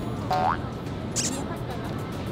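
Background music with an edited-in cartoon sound effect: a short, springy rising tone about a third of a second in, followed by a brief high shimmer just after a second.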